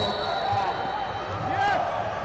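Voices of spectators and coaches talking and calling out across a large, echoing wrestling hall, with a few dull low thuds mixed in.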